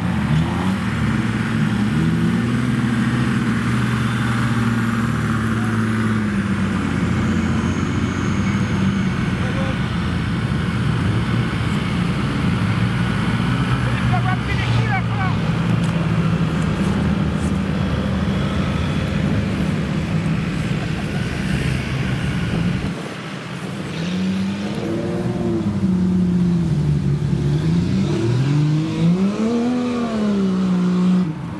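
Off-road 4x4 engines running under load on a grassy climb, the revs held fairly steady at first; after a short dip about 23 s in, an engine revs up and down several times in a row.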